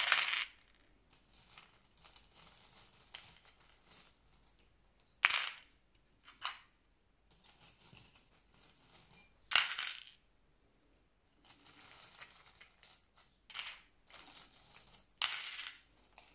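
Small metal charms, keys and coins clinking and rattling as they are dropped from a wooden bowl into a dish. There are separate handfuls near the start, around five and six seconds in, and near ten seconds, then a run of lighter clinks in the last few seconds as the bowl is tipped out.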